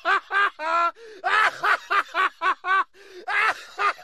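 A man laughing hard in fast runs of high-pitched 'ha' bursts, about four or five a second, with short pauses for breath about a second in and near three seconds in.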